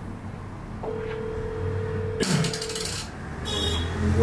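Telephone ringback tone heard over a phone's speaker, a steady tone lasting about a second and a half while a call goes unanswered. It is cut off by a sudden burst of noise with a falling sweep, and a second short burst of noise follows near the end.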